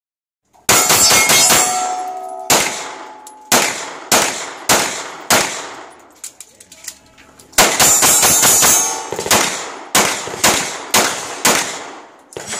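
Semi-automatic pistol fired in strings of sharp shots: a fast burst near the start with steel targets ringing after it, then five evenly paced shots. A pause with small clicks of a magazine change comes about six to seven seconds in, then another fast burst and five more paced shots.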